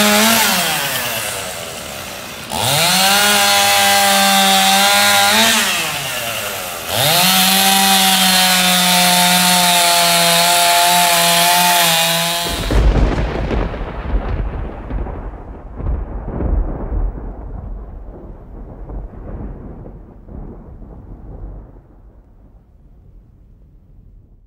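Two-stroke chainsaw cutting a dead tree: three bursts at full throttle, each rising in pitch, holding, then dropping back toward idle. About halfway through, the saw cuts off suddenly into a deep rumble that slowly fades away.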